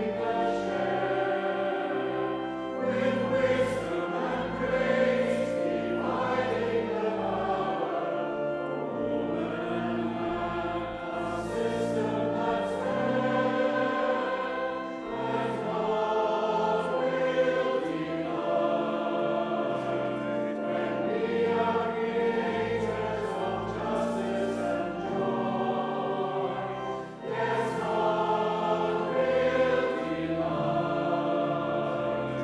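Church choir singing, accompanied by pipe organ holding steady low notes.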